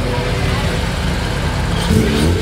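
Honda Civic hatchback's four-cylinder engine running as the car rolls slowly past, with people talking around it.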